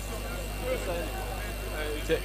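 Faint murmur of voices from the crowd in the room over a steady low hum.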